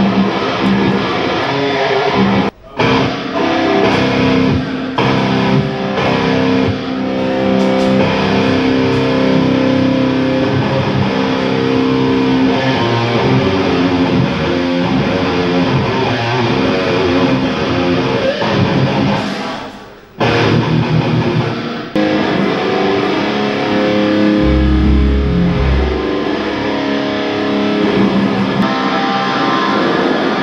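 Heavy metal band playing: distorted electric guitars, bass and drums. The playing cuts out suddenly twice and comes straight back, a few seconds in and about two-thirds of the way through, with heavy deep bass notes near the end.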